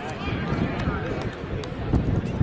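Indistinct distant shouting from players and spectators at an outdoor soccer game, with irregular low thumps throughout. The loudest thump comes just before the end.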